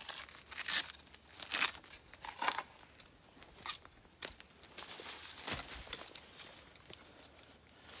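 Several short bursts of handling noise from a carbon fiber climbing spur (tree gaff) and its straps being handled and lifted off a tree trunk.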